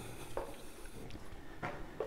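Footsteps on a cave floor: two soft steps, about a second apart.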